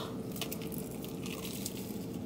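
Chewing a bite of toasted sandwich: faint crunching and squishing with scattered small crackles, over a steady hum.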